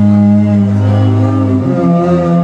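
An instrumental hip-hop beat starts up, led by a loud held bass note with a melody above it; the bass note changes pitch about one and a half seconds in.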